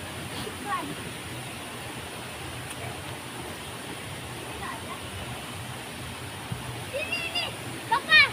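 Steady rushing of river water spilling over a weir into a pool, with a girl's high voice calling out near the end.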